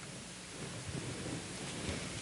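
Quiet room hiss picked up by the pulpit microphone, with faint rustling and light handling of paper at the lectern.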